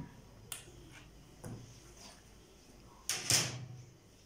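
Stiff cardboard pattern piece lifted off the fabric and set down on the cutting table: a light tap about half a second in, then a short scraping rustle about three seconds in.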